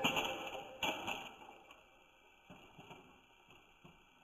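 Music fading out, then a faint knock about a second in and a few light taps later on: toy trains coming to rest on a cloth sheet after tumbling off the track.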